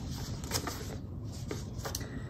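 Pages of a paper booklet being turned by hand: a few brief rustles and flicks of paper.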